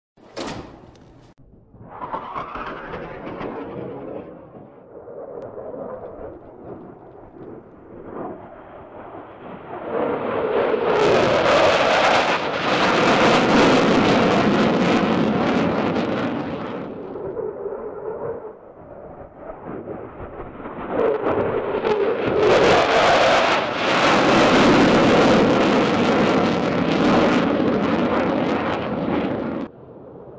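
A USAF F-15E Strike Eagle's twin turbofan engines roaring on low-level passes. A lower, more distant rumble comes first, then two loud passes, each swelling to a roar and easing off; the second is cut off suddenly just before the end.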